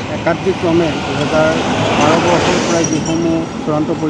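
A man speaking in short phrases, over steady background noise.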